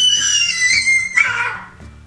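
A baby's long, high-pitched squeal, held near one pitch and breaking off a little over a second in.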